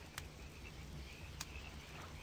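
Faint outdoor night ambience of crickets chirping, broken by two sharp clicks, one just after the start and one near the middle.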